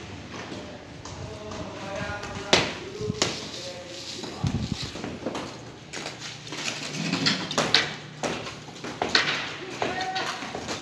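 Hand tools striking brick masonry as a wall is broken down: sharp knocks at irregular intervals, the loudest about two and a half seconds in and a run of several between seven and nine seconds.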